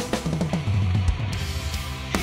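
Drum kit played along with the recording of a power-metal song, with a quick run of tom strikes falling in pitch from the high toms down to the floor tom in the first second, over kick drum and cymbals.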